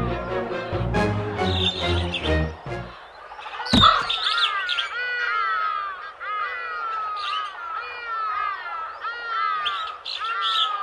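A short stretch of cartoon background music, then a sudden short sound a little before four seconds in, followed by a long run of quick, high bird chirps, several a second, as a sound effect.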